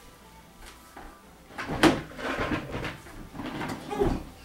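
A sharp knock about two seconds in, then irregular scuffling and knocking as a child's plastic chair is handled and shifted on a wooden floor.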